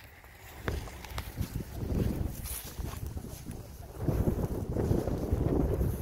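Wind buffeting the microphone in uneven gusts, a low rumble that swells about two seconds in and again over the last two seconds.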